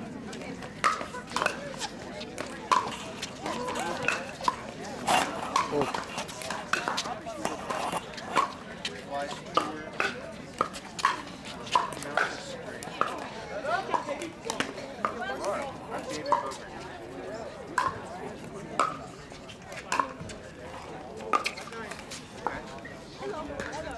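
Pickleball rallies: a string of sharp, hollow pocks as composite paddles strike the plastic ball, about one every half second to a second.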